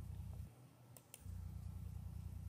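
Two quick mouse clicks about a second in, starting the video player. Under them a faint low electrical hum, which drops out for a moment around the clicks.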